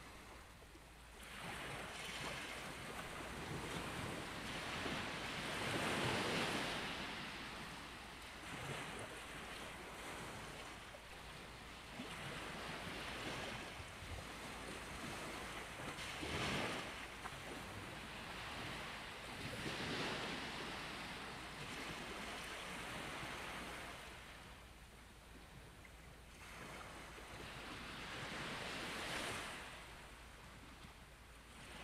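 Sound of ocean surf: waves washing in, swelling and falling away in slow surges every few seconds.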